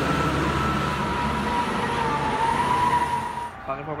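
Passing Mercedes-Benz coach at speed: a steady rush of tyre and engine noise with a high whine in it. It cuts off sharply about three and a half seconds in.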